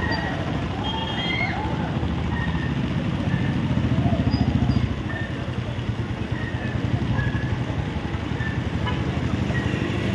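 Motorcycles and cars passing on a wet road, their engine noise building to its loudest about four to five seconds in, with voices calling out in the first second or two.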